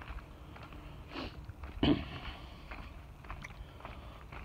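A man walking on a leaf-strewn dirt trail: faint footsteps and two short breaths, about one and two seconds in, the second louder.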